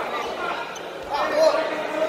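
Voices echoing in a large sports hall, with spectators and coaches calling out. One louder shout comes about a second in.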